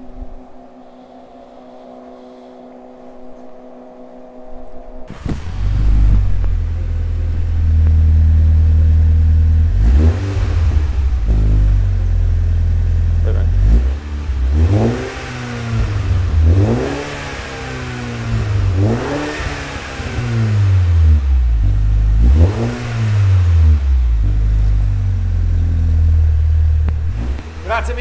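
Mini Cooper S Clubman's turbocharged four-cylinder engine through a Supersprint aftermarket exhaust with twin tailpipes: after a faint steady hum, it starts about five seconds in and idles with a low burble, then is revved in about six short blips. The revs are kept low because the engine is cold.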